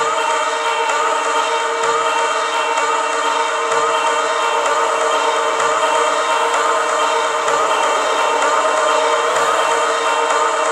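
Electronic synthesizer drone of many held tones with no drum beat, steady in level, with small repeating pitch glides in its middle register.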